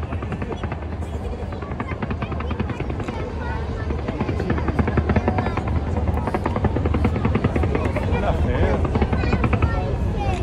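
Fireworks going off in a dense, rapid barrage: a continuous rattle of pops and crackles over a deep rumble, growing louder about halfway through.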